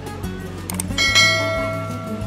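Background music, with a couple of quick clicks and then a bell chime about a second in that rings and fades: the click-and-bell sound effect of a subscribe-button animation.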